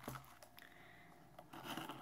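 Quiet handling of a box: a click at the start and scraping toward the end, over the faint steady hum of a household refrigerator.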